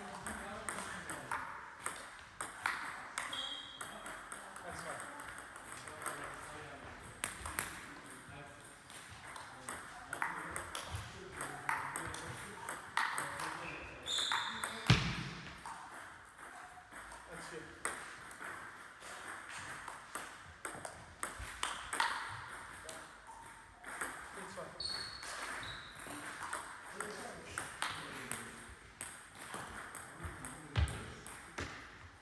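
Table tennis rallies: the ball clicking off the bats and the table in quick, irregular clicks, with a louder knock about halfway through. Voices are heard between the rallies.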